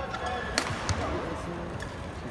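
Badminton rackets striking a shuttlecock in a rally: several sharp hits, with short shoe squeaks on the court mat and a low hum of the crowd in the arena.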